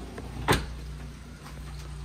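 A single sharp knock about half a second in, over a low steady hum.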